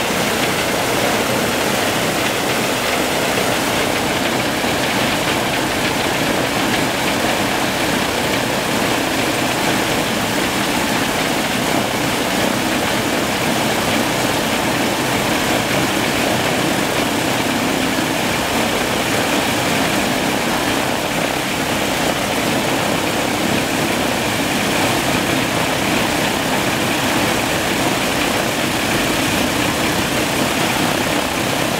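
Ilyushin Il-14T's right-hand Shvetsov ASh-82T radial piston engine running steadily with its propeller turning, on the engine's first start. The sound is loud and even, with no change in speed.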